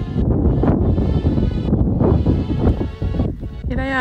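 Strong wind buffeting the microphone in a loud, rough rumble, with background music of held notes underneath; a voice cuts in just at the end.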